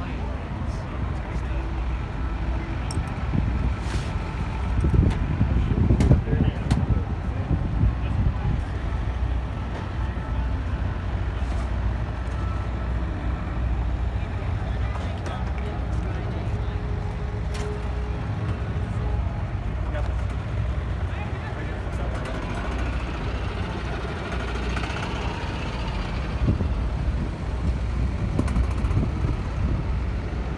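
Background chatter of several people over a steady low rumble, with a few sharp clicks.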